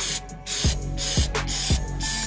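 Aerosol spray can hissing in spurts as it is sprayed into a car door jamb. Background music with a thudding beat about twice a second runs underneath.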